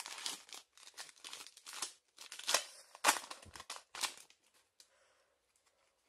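Foil wrapper of a Pokémon trading-card booster pack being torn open and crinkled in the hands, a run of sharp crackling and ripping bursts for about four seconds before it dies down to a few faint rustles.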